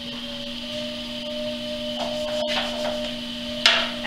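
Electric potter's wheel running with a steady hum and a whine that rises slightly in pitch, under the wet rubbing of hands on spinning clay as the clay is opened up.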